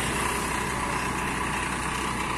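Diesel engine of a large coach bus idling: a steady low hum with a faint steady whine above it.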